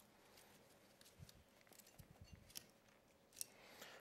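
Near silence with a few faint small clicks and cloth rustles: the cork of a Prosecco bottle being eased out slowly under a towel.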